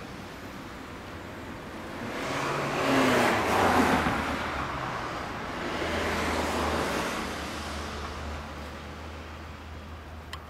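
Road traffic passing on the street: a car goes by about three to four seconds in and a second, quieter one about six to seven seconds in, over a low steady hum.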